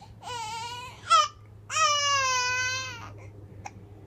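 Infant crying out in three pitched, wavering cries: a short one, a brief yelp, then a longer drawn-out cry about halfway through. A faint steady low hum runs underneath.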